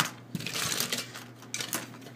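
Small die-cast toy cars clinking and clicking against one another as they are handled and sorted from a loose pile, with a brief rustle about half a second in.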